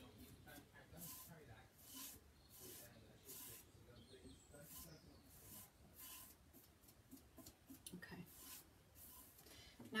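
Faint, soft swishing strokes, about one a second, as a generous coat of top coat is spread over decoupage tissue paper on a wooden drawer front.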